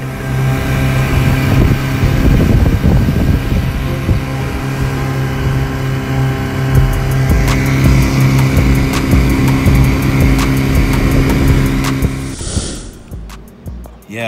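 An engine running steadily with a low hum, under background music; it fades out near the end.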